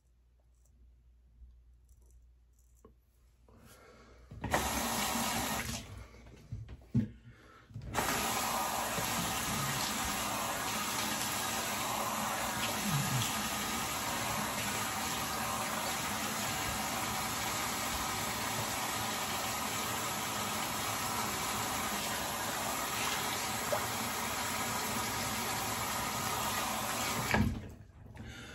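Bathroom tap running into a sink. It runs briefly about four seconds in, then runs steadily from about eight seconds and is shut off just before the end.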